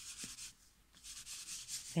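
A foam Distress Ink pad rubbed in short strokes along the edge of paper, a dry scratchy rubbing. One brief bout at the start is followed by a short pause and then a longer run of strokes from about a second in. The pad is nearly dry.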